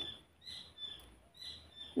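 Faint short bird chirps, three brief calls about half a second apart.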